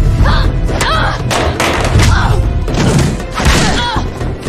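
Staged fight-scene sound effects: a rapid string of heavy thumps and hits, about ten in four seconds, over a dramatic music score.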